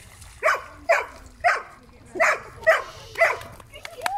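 A dog barking six short, sharp barks in two runs of three, about half a second apart.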